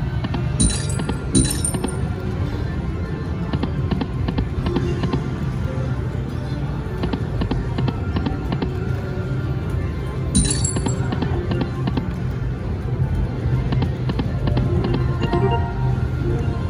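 Piggy Bankin slot machine playing its reel-spin music and jingles over a steady casino din through repeated spins, with bright chime hits about a second in and again around ten seconds in.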